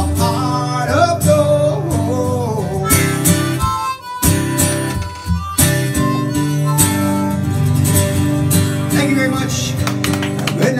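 Strummed acoustic guitar with a harmonica playing the melody over it, live. The music briefly drops in level about four seconds in.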